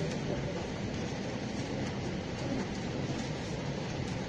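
Steady background noise, a low rumbling hiss with a few faint ticks, and no speech.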